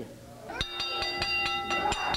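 Wrestling ring bell struck rapidly several times, starting about half a second in, its metallic ringing held on through the rest: the bell signalling the end of the match by disqualification.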